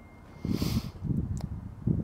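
Handling noise from a wiring harness and a metal valve cover spacer plate being picked up and moved: rustling with a brief hiss about half a second in and a single light click partway through.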